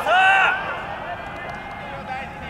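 A man shouting 'sō sō sō!' ('that's it, that's it!') in a loud, drawn-out call in the first half second, then quieter background noise of a big indoor ballpark.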